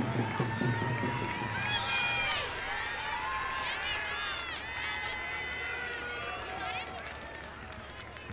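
Several high-pitched voices shouting and calling out, overlapping one another, across an open soccer field.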